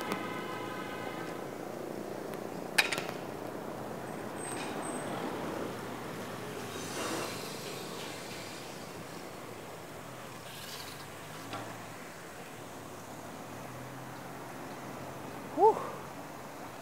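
Steady rush of wind and road noise while riding a bicycle along a city street, with a sharp click about three seconds in and a short voice near the end.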